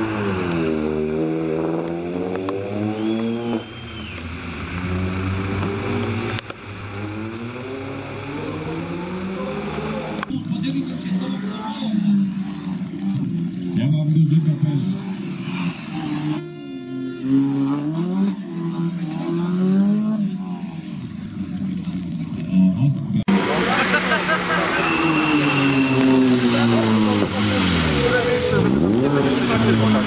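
Citroën C2 rally car's engine revving hard through the gears, its pitch climbing and dropping with each shift as it approaches, passes and pulls away, growing louder toward the end.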